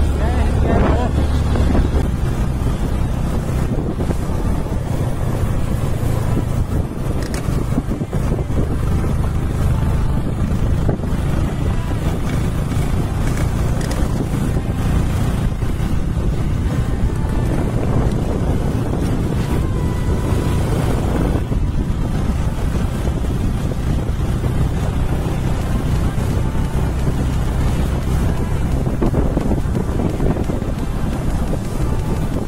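Wind buffeting the microphone on a moving motorcycle, over the steady low drone of the engine.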